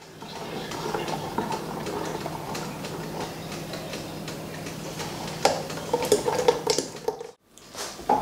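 A spatula stirring melting chocolate and hot cream in a large aluminium pan, scraping with light ticks against the pan. It stops abruptly shortly before the end.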